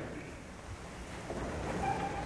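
Low, steady rumbling room noise of a large church hall, with no voice, and a faint short tone near the end.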